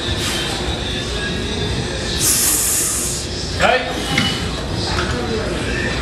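Busy gym background with indistinct voices, and a short loud hiss a little over two seconds in.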